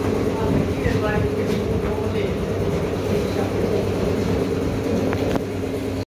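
Steady machine hum and rumble, with a brief distant voice about a second in.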